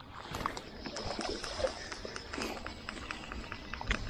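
Fly reel's ratchet clicking in a rapid, regular run of ticks while a hooked rainbow trout is played on a bent fly rod, over wind rumble on the microphone.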